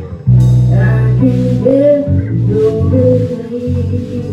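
Live rock band playing, with electric bass and guitar prominent; the bass comes in loud about a third of a second in, under a sliding melody line.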